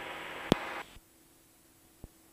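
Aircraft intercom and radio audio feed: a faint steady hiss with a single sharp click about half a second in, then the feed cuts to dead silence just before one second in as the squelch closes.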